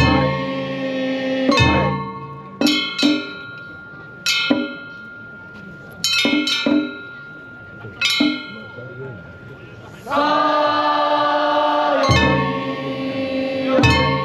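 Traditional Japanese festival music accompanying a Kunchi river-boat float: sharp ringing notes struck one at a time, deep drum beats at the start and again near the end, and a fuller held chord of stacked tones about ten seconds in.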